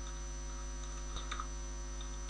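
Low, steady electrical mains hum on the recording, with a few faint keyboard clicks about a second in as a compile command is typed.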